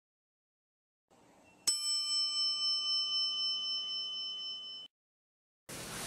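A single bell ding: one sharp strike with a clear, ringing, multi-tone ring that fades slowly, then cuts off suddenly about three seconds later.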